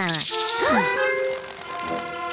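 Cartoon background music with sustained notes. A quick rattle sound effect opens it, falling in pitch, with a shimmering hiss over the first second, and a short swooping sound rises and falls about half a second in.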